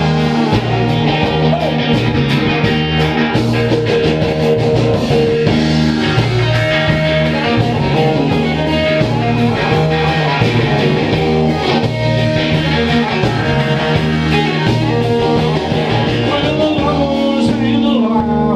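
Live rock band playing loud: electric guitars, bass guitar and a drum kit, full and steady with the drums keeping time.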